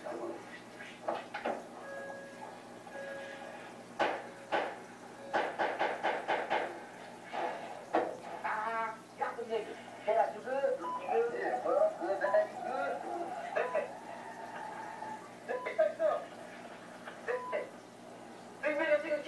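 Indistinct voices and background music in a room, with a quick run of short knocks or clatter a few seconds in.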